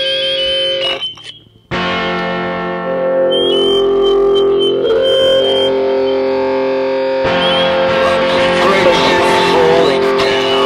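Instrumental music: long held, droning tones with guitar and effects. It drops out briefly about a second in, then returns and thickens into a denser, noisier texture after about seven seconds.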